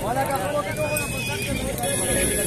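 A horse neighs at the very start, a short call that rises and falls in pitch, over men's voices in the background.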